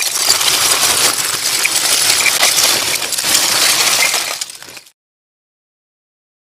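Logo-reveal sound effect: a dense, mostly high-pitched rush of many tiny clicks, like a spray of particles, which cuts off suddenly near the end.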